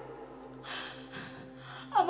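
A woman's two quick breaths, gasp-like, drawn close into a handheld microphone about half a second apart, over a faint steady low hum.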